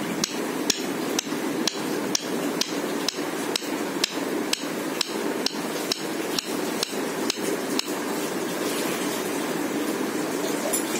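Sharp, evenly spaced clicks, about two a second, over a steady background noise; the clicks stop about eight seconds in.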